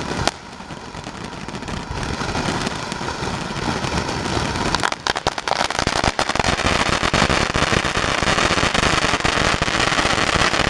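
World Class Fireworks Reaper ground fountain burning: a continuous hissing spray of sparks thick with fine crackling. There is a sharp pop just after the start, and the fountain grows louder from about six seconds in.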